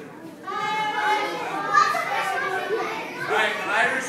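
A crowd of young children chattering and calling out at once, their voices overlapping in a large school gym, picking up about half a second in.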